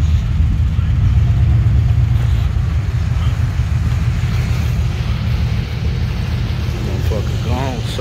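1988 Chevrolet Caprice's engine running close by with a steady low rumble that eases slightly over the last few seconds as the car moves off. A voice speaks briefly near the end.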